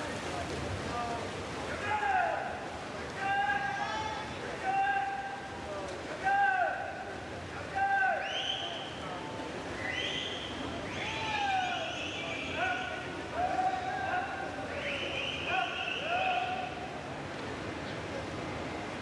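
Repeated high-pitched shouts and yells of encouragement from the pool deck and stands, one every second or two, over the steady noise of a busy indoor pool hall.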